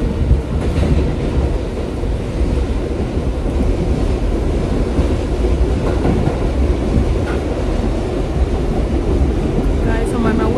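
New York City subway train running, heard from inside the car: a loud, steady, deep noise of the car moving along the track.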